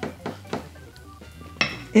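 A drinking glass set down on a wooden table: a few short clicks and a clink.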